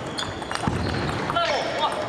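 Table tennis rally: a few sharp clicks of the ball off paddles and table in the first second, over the clatter and chatter of a busy sports hall.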